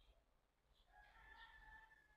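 A faint, long, drawn-out call held on one pitch, starting just under a second in.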